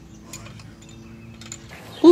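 A few faint, short clicks from a hand tool working on an exercise bike's frame, over a low steady hum.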